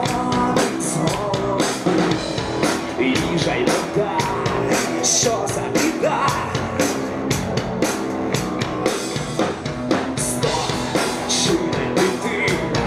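Rock band playing loud music: electric guitar and drums with a steady beat under a male lead singer.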